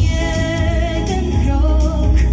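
A girl singing through a handheld microphone over a backing track, holding long notes with vibrato above heavy bass and a steady beat.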